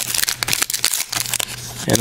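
Foil trading-card pack wrapper being torn open and crinkled by hand, a run of irregular crackling rustles. A man's voice starts right at the end.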